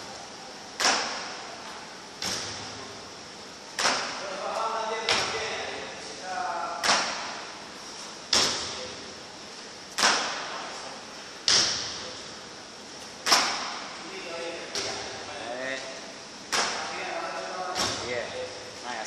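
Feet landing hard in repeated box jumps, with sharp thumps about every one and a half seconds, some on a wooden plyo box and some on the floor.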